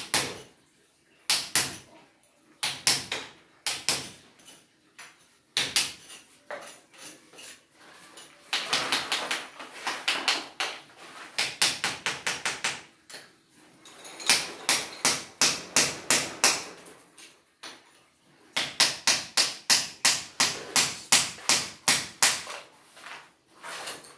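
Hand hammer striking at the foot of an aluminium door frame that is being knocked loose for removal. The blows come in bursts of sharp strikes, about four a second, with short pauses between.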